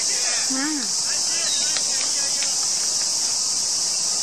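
A loud, steady, high-pitched chorus of insects, with shouting voices across the field and a couple of short sharp knocks about two seconds in.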